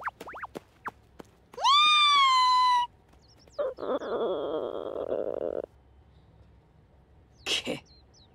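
Cartoon kitten voice: a few quick faint chirps, then one long, loud high meow, followed by a rougher, raspier cat cry lasting about two seconds and a short cry near the end.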